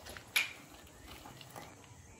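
A single short click about a third of a second in, then faint background noise.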